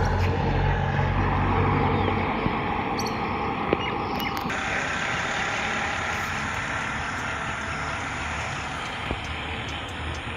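A passing motor vehicle: its low engine hum dies away about two seconds in, leaving a steady hiss of road and outdoor noise that slowly fades.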